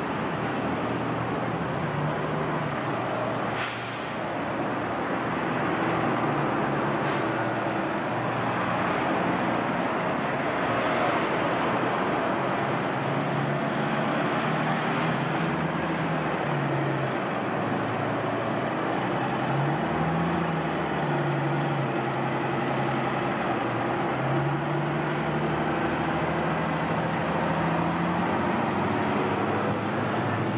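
Diesel engine of an RTS-style transit bus running as it pulls through an intersection, its pitch rising and falling as it accelerates, over street traffic. A short sharp sound comes about four seconds in.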